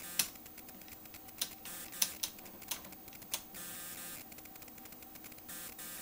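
About six sharp, separate clicks from bench test-equipment controls, switches or a detented knob, as the signal generator is set to 350 MHz, over a faint steady electronic hum.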